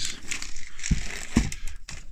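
Hands rummaging among plastic seed tubs and packets, with rustling and two short knocks of plastic, about a second in and again half a second later.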